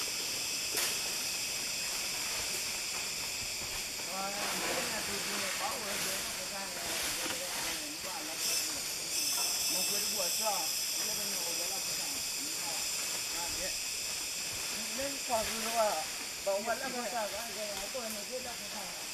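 Steady high-pitched drone of forest insects that grows brighter about halfway through, with people's voices talking at a distance now and then.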